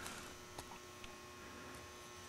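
Faint steady electrical hum, with a light click about half a second in.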